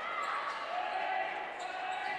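Basketball being dribbled on a hardwood gym floor, with a low murmur of voices from the crowd in the hall.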